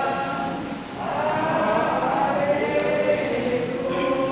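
A choir singing in long held notes, with a short break about a second in before the next phrase.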